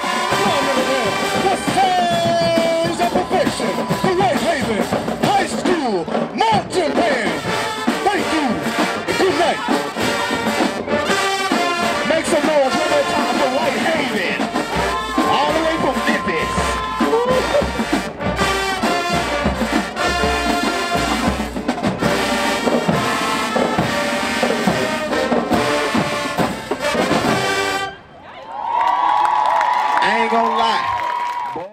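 A high school marching band playing a loud, up-tempo number, with brass (trumpets, trombones, sousaphones) over drumline hits. Near the end the music breaks off briefly, then comes back as one held brass chord.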